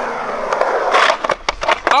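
Skateboard wheels rolling across a concrete bowl with a steady rush. About a second and a half in this gives way to a quick run of clacks and scrapes as the metal trucks grind the coping in a backside smith grind.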